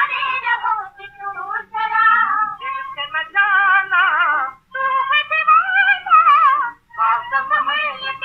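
Vocal from an old Hindi film song: a high-pitched voice sings wavering phrases with heavy vibrato over light accompaniment, with two short breaks between phrases.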